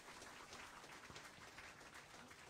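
Near silence: faint room tone with light scattered ticks.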